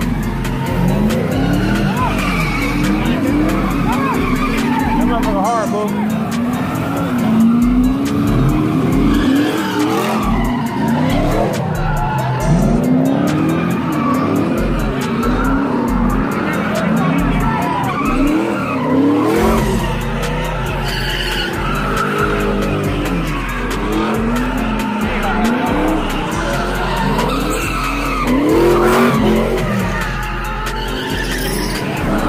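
Car engines revving up and down over and over, with tires squealing as cars do donuts and burnouts; a crowd's voices underneath.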